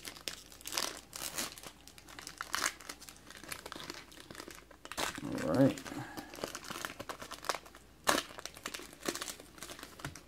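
Foil wrappers of trading-card packs crinkling and crackling in irregular bursts as they are squeezed and pulled open by hand.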